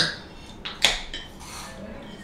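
Cutlery clinking against dishes during eating, with one sharp clink a little under a second in and a few lighter taps around it.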